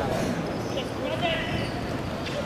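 Men talking near the camera at a football pitch, with faint dull knocks of the ball in play.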